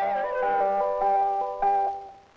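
Film background music: a melody of held notes stepping between pitches, opening with a wobbling downward slide in the first half second.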